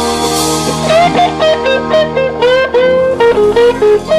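Slow blues played on electric guitar. About a second in, a lead line of bent notes begins over sustained backing chords.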